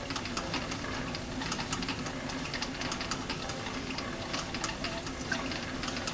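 A lathe turned by hand with a spring-loaded knurling tool just touching the steel work. It gives a steady, faint mechanical rattle with many light, irregular ticks.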